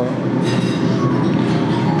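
Steady background din of a busy cafe with music playing, a dense rumble-like texture with no single event standing out.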